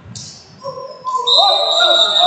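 A referee's whistle sounds in one long, steady blast starting just past halfway, stopping the wrestling bout because a wrestler has been hurt. A voice cries out under it.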